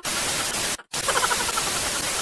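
Television static: a steady white-noise hiss that cuts out briefly just under a second in, then resumes.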